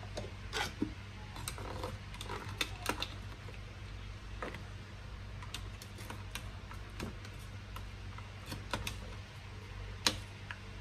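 Plastic hand citrus juicer clicking and scraping as small lime halves are twisted and pressed on its reamer: faint, irregular ticks and small knocks, over a steady low hum.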